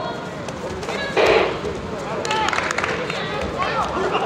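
Shouting voices during a taekwondo sparring bout, with a sudden short loud burst about a second in and a few faint sharp taps a second later.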